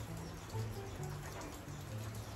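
Background music: a light tune of short held notes changing every few tenths of a second over a low bass line.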